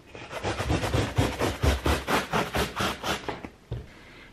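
Handsaw cutting through a wooden board, with quick, even back-and-forth strokes about four a second that stop shortly before the end.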